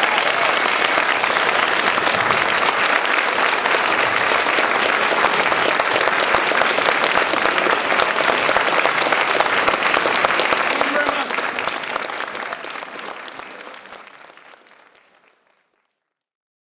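An audience applauding steadily, then fading away over the last few seconds.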